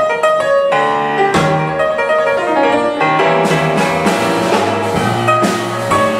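Blues band's instrumental break: grand piano playing chords and runs over a drum kit, with no singing.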